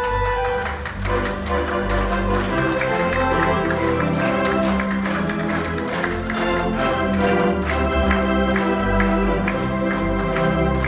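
A theatre organ playing a lively piece: sustained chords over a moving bass line, with a steady beat of crisp rhythm strokes.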